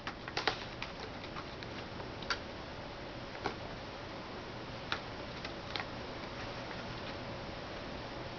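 Corrugated cardboard scratch pad giving sparse, irregular light clicks and crackles as a cat rolls and rubs on it and her paws shift on the cardboard, over a steady faint hiss.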